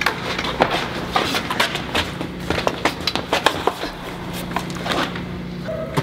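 Rapid, irregular sharp knocks and clicks, several a second, over a steady low hum.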